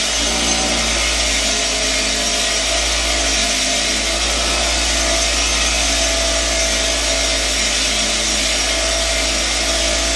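Bench grinder running steadily with a brass wire brush wheel. A worn needle-bearing part from an ATV's rear wheel carrier is held against the wheel to scrub its plated surface clean.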